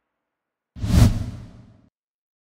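A single whoosh sound effect with a deep rumble underneath, swelling quickly about a second in and fading away over the following second.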